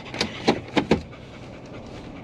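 A Siberian husky panting fast, four quick breaths in the first second, over the steady road noise of a car cabin. The dog is winded from running at an off-leash dog park.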